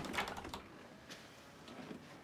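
A few faint, scattered clicks of a key rattling in a door lock and the door latch, over quiet room tone.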